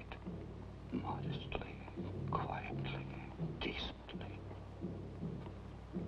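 Indistinct whispered voices, quiet and broken, over a low steady hum.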